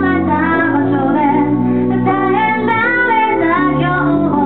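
A woman singing a Japanese song, accompanying herself on an electric keyboard played as piano. She holds long sung notes over sustained keyboard chords.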